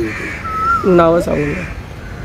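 A crow cawing in the background, twice, with a man's short vocal sound about a second in.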